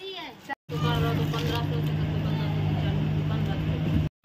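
A steady low engine drone starts abruptly about half a second in and runs unchanged, with a faint voice over it for a moment.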